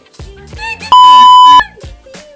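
A loud, steady single-pitch beep lasting about two-thirds of a second, the standard censor bleep tone, over a hip-hop track with rapping.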